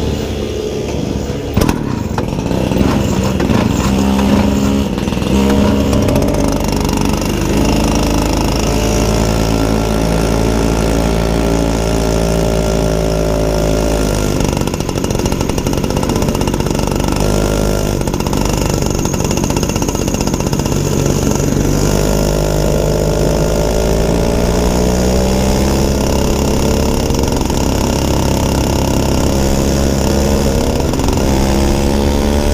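Small go-kart engine running close to the microphone, its pitch rising and falling several times as the throttle is opened and eased. There is a single sharp knock about two seconds in.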